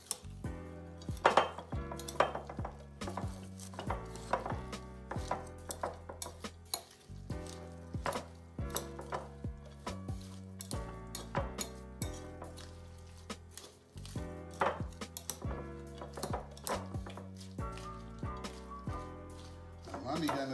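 Metal spoon and fork stirring coleslaw in a glass bowl, with repeated clinks and scrapes against the glass, over background music with a steady bass line.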